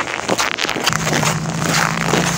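Jacket fabric and fur rustling and scraping against a clip-on microphone while walking in winter clothes. A steady low hum comes in about a second in and holds.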